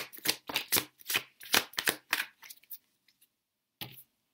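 A tarot deck being shuffled by hand: a quick run of card slaps, about four or five a second, for almost three seconds, then one more just before the end.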